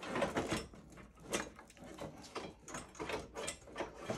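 Large metal inner piece of a Ram TRX front bumper being worked loose by hand: a string of irregular clanks, clicks and scrapes, with the sharpest knock about a second and a half in.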